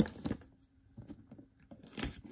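Cardboard retail box being handled and turned over in the hands: a sharp tap at the start and another near the end, with faint scuffs and ticks between.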